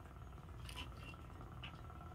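Faint steady hum of the space station cabin background, with two brief faint rustles.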